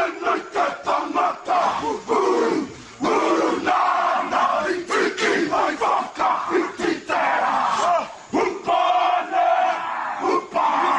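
A group of Māori men performing a haka, shouting the chanted lines together in a sharp, rhythmic beat.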